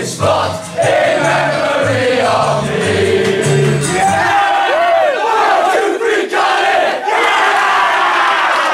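A group of teenage boys singing a team song loudly together, with a backing track whose bass line steps from note to note. About four seconds in the music stops and the singing breaks into whooping and shouting.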